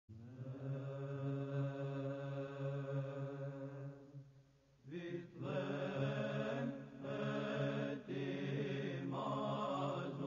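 Slow chanting by a low male voice in the background: one long held note, a short break about four seconds in, then a string of held notes that step in pitch.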